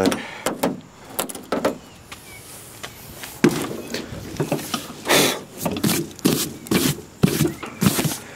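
Camera handling noise: irregular rustling, scuffing and knocks as the camera is carried and the person climbs onto a riding tractor, the knocks coming thicker in the second half. No engine is running yet.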